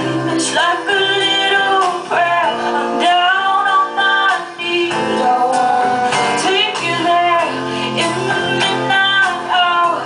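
A woman singing live in long, wavering held notes with vibrato, accompanied by a strummed acoustic guitar and a double bass.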